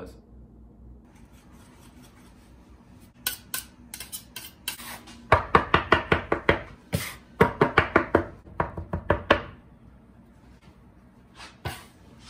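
Metal bench scraper chopping and scraping against a wooden cutting board as it cuts eggs into flour for pasta dough: a quick run of sharp taps, about five a second, from about three seconds in until near the tenth second, then a couple more near the end.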